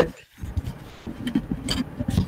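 Faint, low voice-chat sound: a murmur of voice and microphone noise, with a short click near the end.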